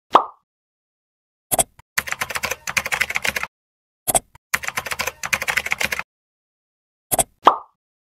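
Computer-interface sound effects: a short pop at the start, a mouse click, two runs of rapid keyboard typing of about a second and a half each with a click between them, then another click and a second pop near the end as a dialog box appears.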